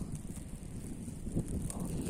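Wind buffeting the phone's microphone in a snowstorm: a low, uneven rumble with a brief louder gust about one and a half seconds in.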